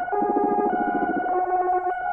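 Synthesizer electronica: a held note runs over short stepped notes, and a buzzy, fast-pulsing low tone sounds for about a second in the middle.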